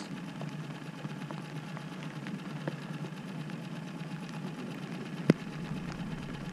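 Small outboard motor idling steadily on an aluminum fishing boat. A single sharp click comes about five seconds in.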